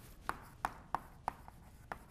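Chalk writing on a blackboard: a series of sharp taps, about three a second, as letters are written.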